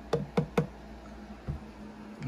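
Three quick knocks of knuckles on the hollow plastic head of a Jack in the Box clown animatronic, then a single softer thump about a second and a half in.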